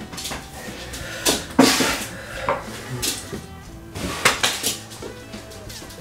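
A run of knocks and light metallic clinks as a small dog is put down and picked up again, with background music underneath.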